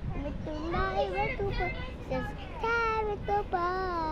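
A young child singing a counting song ('one little, two little… buses') in a high voice, with several held notes near the end.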